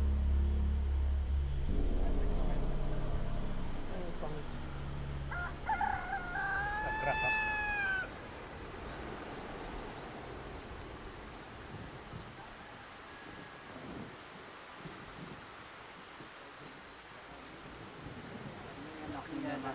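Low soundtrack music that fades out over the first few seconds, then a rooster crowing once, a single call that rises and falls over about a second and a half, followed by faint background sound.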